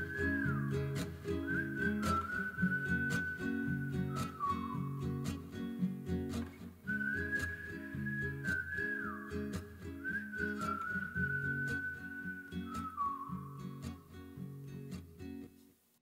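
Whistled melody in a song's instrumental outro: a phrase of high held notes that slide down, played twice, over low backing notes and a steady beat. The music dies away and stops just before the end.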